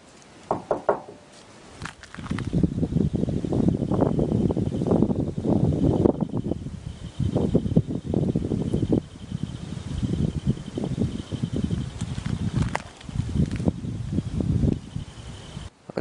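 Close, uneven rustling and rubbing noise in stretches, starting about two seconds in. A faint steady high whine runs under it from about four seconds in.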